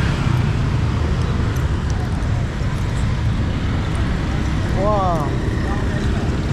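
City street traffic of motor scooters and cars heard as a steady low rumble. About five seconds in, a voice gives a short call that rises and falls.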